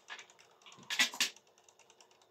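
A short cluster of taps and rustles about a second in, from the recording phone being handled at close range.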